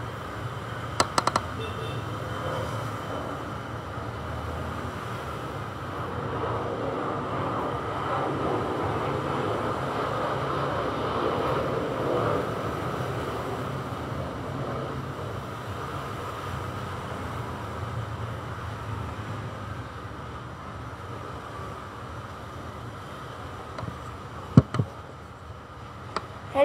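Steady background rumble and hiss that swells slightly for several seconds in the middle, broken by a few sharp clicks about a second in and one near the end.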